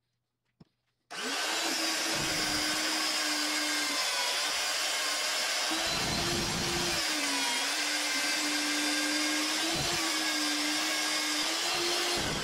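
Magnetic drill's motor running a 9/16-inch annular cutter through steel plate. It is a steady whine that starts about a second in, with slight dips in pitch now and then as the cutter loads up.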